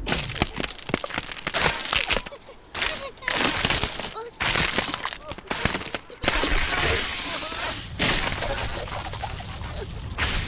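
Cartoon sound effects of ground cracking and splitting in a run of crackling bursts as a crack races across the sand, mixed with a cartoon squirrel's wordless squeaks and chattering.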